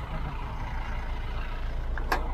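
A stopped pickup truck's engine idling with a steady low hum.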